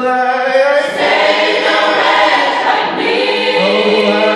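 Gospel choir singing held chords, many voices together; the sound grows fuller and denser about a second in.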